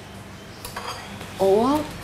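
Light clinks of plates and cutlery as food is served at a dining table, followed near the end by a short rising vocal sound from one of the people at the table.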